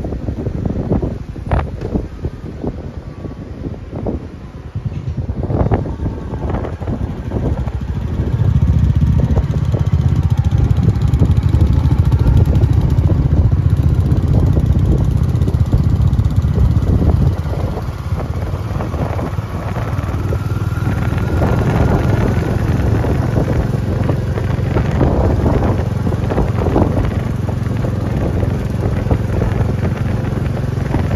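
Motorcycle engine running under way with wind buffeting the microphone; the engine rumble grows louder about eight seconds in and then holds steady.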